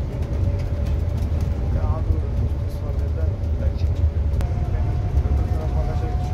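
Cabin noise of a Neoplan Tourliner coach driving on the road: a steady low rumble of engine and tyres, with a faint whine that steps up in pitch about four seconds in.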